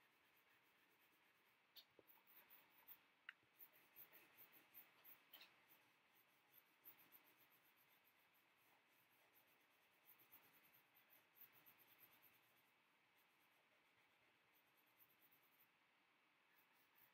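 Faint, rapid scratching of a coloured pencil shading on paper in quick back-and-forth strokes. It pauses briefly about three-quarters of the way through, then starts again near the end.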